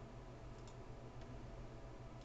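A couple of faint computer-mouse clicks over a low, steady background hum.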